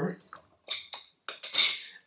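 Oak leaf lettuce leaves rustling and tearing in a few short crackles, the loudest and longest near the end.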